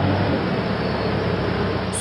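Diesel engine of an excavator clearing a landslide, running steadily with a low hum, cutting off suddenly at the end.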